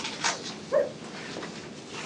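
Cardboard box scraping and rustling as it is slid under a CPR mannequin as a makeshift backboard, with a brief murmured voice about a second in.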